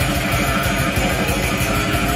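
Death/thrash metal band playing live: distorted electric guitars over dense drumming, loud and steady, with no vocals.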